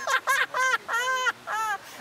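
A man laughing loudly in a run of high-pitched bursts that rise and fall, about five in two seconds.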